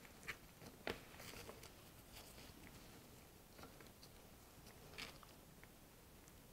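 Faint, soft scratching and a few light ticks from a small paintbrush working embossing powder around a paperclay piece on paper, with gloved fingers handling the piece; two sharper ticks come within the first second.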